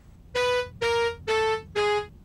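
Electronic keyboard or synthesizer playing four short, evenly spaced notes, each a step lower than the last, in a descending comic musical sting.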